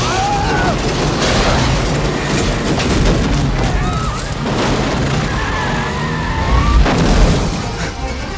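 Action-film soundtrack: orchestral action music mixed with booms and crashes from a car chase, with a loud burst of impacts near the end.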